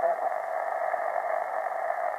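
Steady hiss of band noise from an amateur radio receiver's speaker on an open channel, squeezed into the narrow voice passband.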